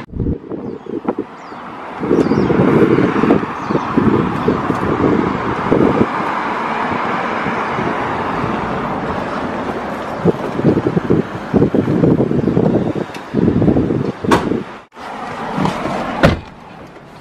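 Wind buffeting the microphone in irregular gusts over steady street traffic noise, with a sharp knock near the end.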